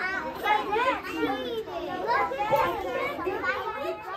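Many kindergarten children talking at once, their voices overlapping into steady classroom chatter.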